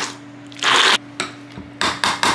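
Handheld immersion blender running in a glass bowl of guacamole, its motor hum steady under loud grinding surges as the blade chops through avocado and bell peppers. The surges come in short bursts, roughly every half second.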